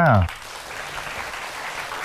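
Studio audience clapping steadily, starting just after a short spoken exclamation.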